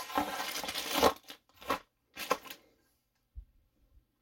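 Plastic packaging crinkling and rustling: a dense rustle for about a second, then two short rustles, as a plastic-wrapped chainsaw guide bar and its plastic cover are handled over a cardboard box. A soft low bump near the end.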